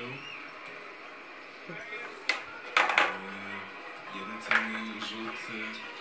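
Balls of a toy pool table clacking against each other and the table's rails as a Maine Coon cat paws at them: four sharp clacks, two of them close together about three seconds in.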